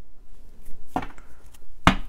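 Tarot cards and a card deck knocking on a tabletop as they are laid down: light taps, a knock about a second in, then one sharp, loud knock near the end.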